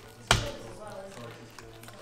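A single sharp tap about a third of a second in: a plastic straw jabbed at the sealed film lid of a bubble-tea cup, not yet piercing it. Soft background music underneath.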